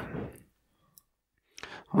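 A pause in conversational speech: a drawn-out spoken word trails off, then about a second of dead silence broken by one faint click, and soft clicking noises just before a man starts speaking again.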